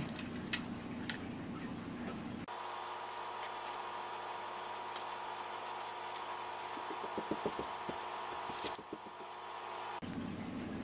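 Hands pinning ribbon to fabric: a few light clicks and handling noise over a steady background hum. From a few seconds in, the sound gives way to a steadier hum with a run of faint ticks near the end.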